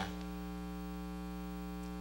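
Steady electrical mains hum with a ladder of evenly spaced overtones, constant in pitch and level.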